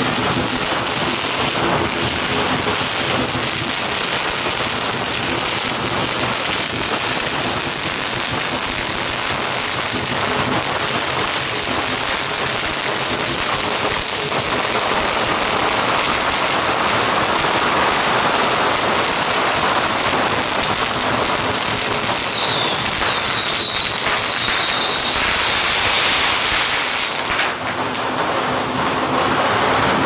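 A long string of firecrackers going off in a dense, continuous crackle.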